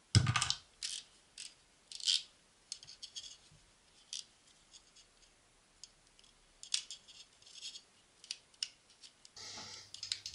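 Handling noise from a fishing rod and small items being moved about on a workbench: irregular sharp clicks, taps and short scrapes, the loudest in the first half second, with a brief hiss near the end.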